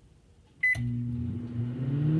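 Microwave oven started: a click and one short beep about two thirds of a second in, then the oven running with a steady hum whose pitch climbs slightly near the end.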